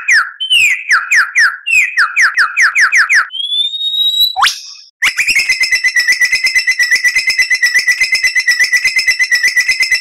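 Lyrebird song: a run of quick, falling whistled notes that speed up, then a rising whistle ending in a sharp upward sweep. After a brief pause about five seconds in, a fast, even trill.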